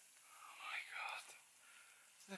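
A person whispering a few words softly, about half a second in and for under a second.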